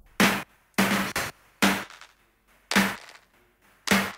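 Soloed snare drum track from a multitrack band recording: about six single snare hits at a slow, uneven pace, with quiet between them. Each hit has a short, filtered tail that sounds almost distorted.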